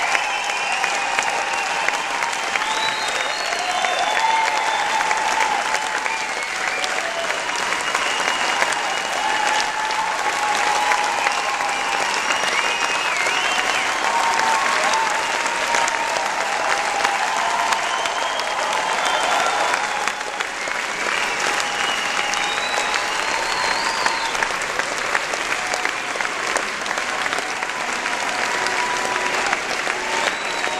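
Concert hall audience applauding: dense, steady clapping throughout, with voices cheering and calling out above it.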